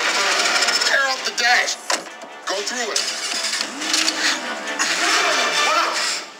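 Action-film soundtrack, with voices, music and effects, playing through a smartphone's dual stereo speakers: loud and clear but with almost no deep bass.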